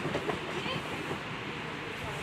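A German Shepherd running through a fabric agility tunnel: a hollow rumble with a quick patter of paws, busiest in the first half-second.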